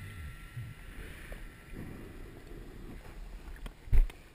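Muffled low rumble of water around a GoPro in its underwater housing, with one sharp thump just before the end.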